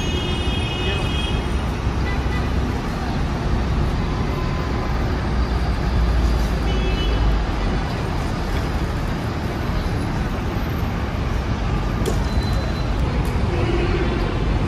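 Steady low rumble of road traffic and vehicle engines. A faint high tone sounds briefly near the start and again about six and a half seconds in.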